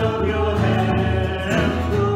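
Live worship song: several voices singing together in harmony over a strummed acoustic guitar.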